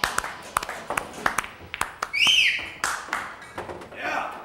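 Irregular sharp taps and clicks, with a short squeak about two seconds in that rises and then falls in pitch.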